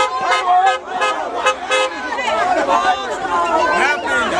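A crowd of many voices shouting and chattering at once, close around a car.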